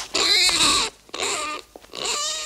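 An animal crying out in three wavering, high-pitched calls, each under a second long, with short gaps between them.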